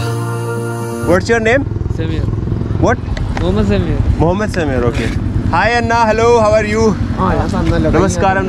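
Background music that cuts off about a second in, then men talking over the low, steady rumble of motorcycle engines running.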